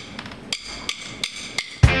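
Drumsticks clicked together several times at an even pace, counting the band in. Near the end the full rock band comes in loudly on the downbeat, with drums and guitar.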